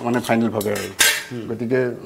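Metal kitchen utensils and pots clinking and clattering at the counter, with a sharp clink about a second in. A man's voice runs along under it.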